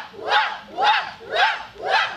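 A group of voices shouting in unison in a steady rhythm, about two shouts a second, each shout rising in pitch.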